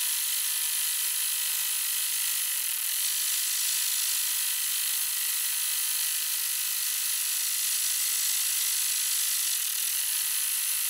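Multi-needle embroidery machine running a satin stitch: a steady, even stitching noise as the hoop moves under the needle.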